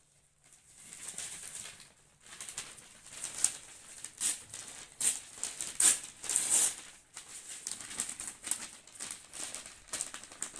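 Rustling and crinkling of cloth, a plastic bag and newspaper being handled by hand. It comes as a run of short scratchy bursts, loudest in the middle.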